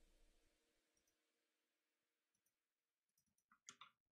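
Near silence, then a few soft, sharp clicks near the end, from working the computer.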